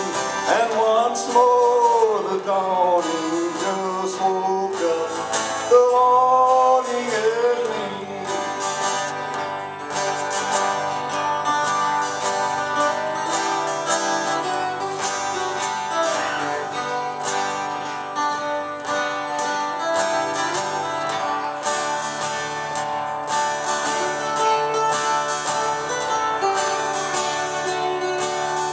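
Acoustic guitars playing a country song live: strummed chords under a lead line that slides and bends through the first several seconds, then steady strumming and picked notes.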